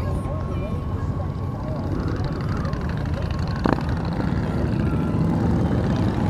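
A Yamaha FJR1300's inline-four engine runs steadily at cruising speed, mixed with wind rush on the bike-mounted microphone. There is a single short tap a little past the middle.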